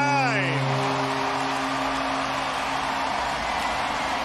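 Home stadium crowd cheering steadily for a game-tying home run.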